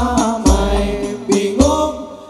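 Al-Banjari sholawat music: a male voice singing a devotional melody over hand-struck terbang frame drums, with deep drum strokes at the start, about half a second in and again past the middle.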